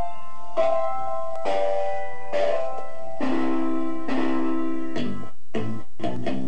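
Slices of a sampled record with a piano-like keyboard sound, triggered one after another from a MIDI controller through FL Studio's Fruity Slicer: about six held notes or chords a little under a second apart, breaking off about five seconds in into a few short, choppy hits.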